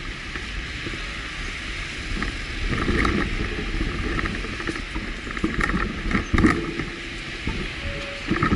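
Busy city street ambience: a steady rumble of road traffic with scattered short knocks and rattles, heaviest about three seconds in and again around six seconds in.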